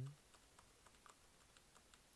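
Near silence with a scatter of faint, light clicks of computer keys as the spreadsheet is moved along.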